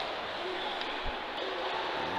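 Ice hockey rink ambience during play: a steady noisy hiss of the arena and skating, with one dull thump about a second in.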